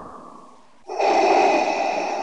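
Darth Vader's mechanical respirator breathing: one hissing breath fades out, and about a second in the next, louder breath begins with a thin whistle over the hiss.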